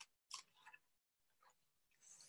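Near silence with a few faint, brief rustles in the first second as a paper strip is wrapped around a cardboard tube.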